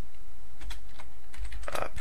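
Computer keyboard being typed on: a few separate key clicks over a steady low hum.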